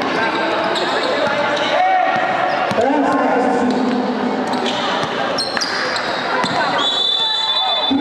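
Basketball bouncing on an indoor court amid the voices and shouts of players and onlookers, with a few short high squeaks in the second half.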